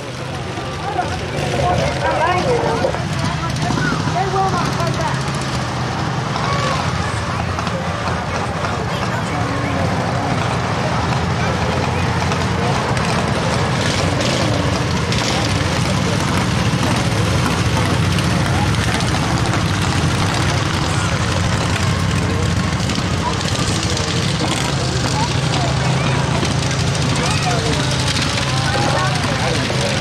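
A pack of racing lawn mowers' small single- and twin-cylinder engines running together at speed, building over the first few seconds and then steady and loud.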